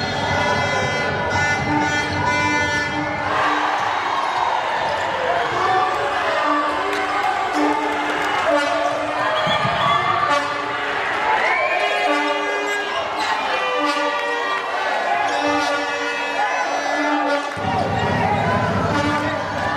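Indoor handball game: a handball bouncing on the hardwood court and short squeaks from players' shoes, with players and coaches shouting, echoing in a large sports hall.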